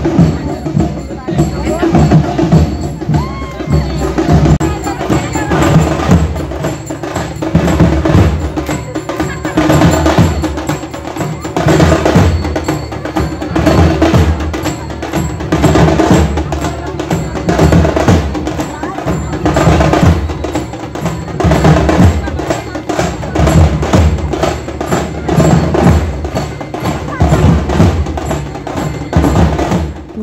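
Loud rhythmic procession music: drums beating a steady, fast beat with clanging metal percussion over it.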